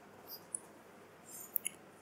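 A few faint, short high-pitched clicks and squeaks, with two sharper ones about half a second in and near the end.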